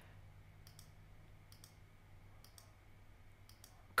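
Faint clicks, four of them roughly a second apart, over quiet room tone.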